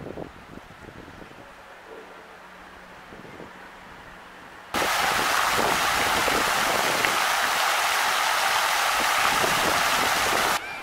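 Quiet outdoor ambience with a faint steady hum, then about halfway a sudden switch to loud, steady splashing of a fountain's water jets falling into its basin.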